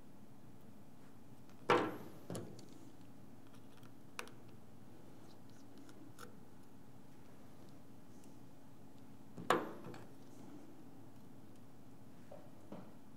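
Small sharp clicks and taps of a precision screwdriver and small metal parts as the ear-speaker bracket is unscrewed from an iPhone 7. There are two louder clicks, about two seconds in and about nine and a half seconds in, with a few fainter ticks between them, over a faint steady hum.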